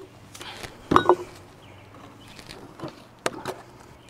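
Handling noises as a plastic fuel jug and its fuel hose are worked by hand: a sharp knock about a second in, then a few light clicks and rattles. The diesel engine is not running.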